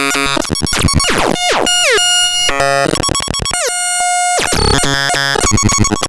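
Noise Engineering Ataraxic Iteritas and Basimilus Iteritas Alter digital voices in a Eurorack modular synthesizer, playing a harsh, noisy sequenced pattern of clicky hits and stepped tones. Two steep falling pitch sweeps cut through, about a second and a half in and just before four seconds in.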